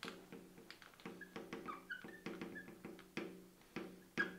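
Felt-tip marker writing on a glass lightboard: a string of short, faint squeaks, one for each pen stroke, coming irregularly two or three times a second, each at much the same pitch.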